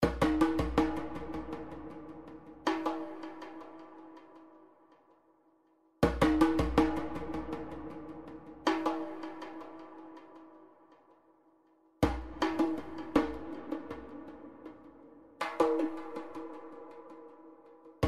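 Background music: a phrase of quick percussive hits over a held low note, starting anew about every six seconds and fading away between.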